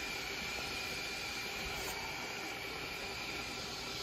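Sausages frying in a lidded pan, giving a steady, even hiss.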